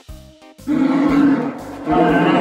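Cartoon sound effect of a bear roaring: one loud, rough roar lasting about a second begins about half a second in, over light background music, and a second loud call starts just before the end.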